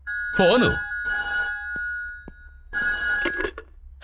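Landline telephone ringing with a steady, shrill electronic ring, one long ring and then a shorter one, with a man's brief exclamation over the start of the first ring.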